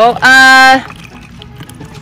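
A child's loud, drawn-out exclamation, followed by faint trickling as clear developer is poured through a plastic funnel into a plastic water bottle.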